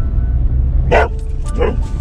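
Border collie barking twice inside a moving car, about a second in and again half a second later, at a three-wheeler behind the car. Background music and low road rumble continue underneath.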